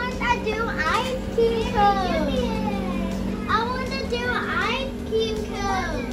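Young children's high-pitched voices chattering and exclaiming in short bursts, with a steady hum underneath.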